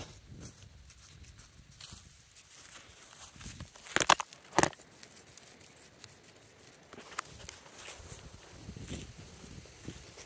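Quiet footsteps on grass, with two sharp knocks about four seconds in and a few fainter clicks later.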